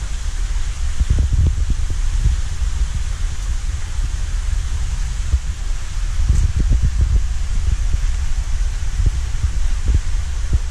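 Wind buffeting the microphone: uneven low rumbling with a few soft thumps over a steady hiss.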